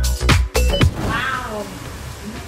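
Dance music with a fast steady beat cuts off under a second in. A short pitched call follows, falling in pitch over about half a second.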